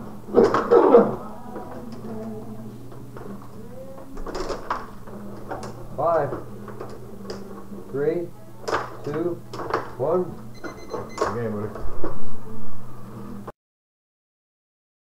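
Tabletop rod hockey game in play: sharp clicks of the puck and the rod-turned players, mixed with indistinct voices over a steady low hum. The sound cuts off suddenly near the end.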